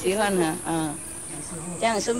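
A steady, high-pitched chorus of insects, with a voice speaking briefly over it in the first second and again near the end.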